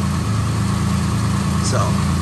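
A steady, loud, low mechanical hum.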